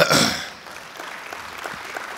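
Audience laughing and clapping: a loud burst of laughter at the start that fades within about half a second into light, scattered clapping.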